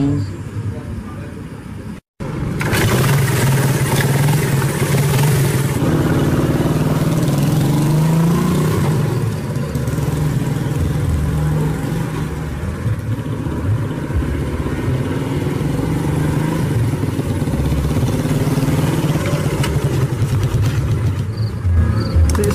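A motorcycle engine running, its pitch rising and falling a few times, after a brief dropout about two seconds in.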